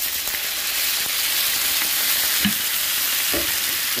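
Water poured into a hot oiled skillet of pan-roasted potato wedges, hitting the oil and sizzling steadily and loudly. This is the splash of water that steams the potatoes through.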